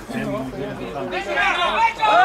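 Several voices talking and calling out over one another, getting louder and more raised from about a second in.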